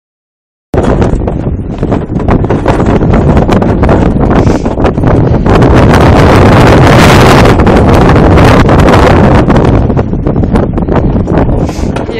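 Strong wind buffeting the microphone, loud and ragged, starting abruptly about a second in.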